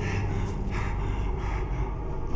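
A badly wounded man gasping for breath in short, ragged gasps, several in quick succession, over a low steady drone.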